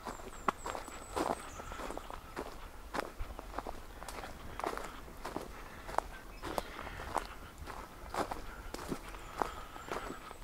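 Footsteps of a person walking at a steady pace on a wood-chip trail, each step a short crunch.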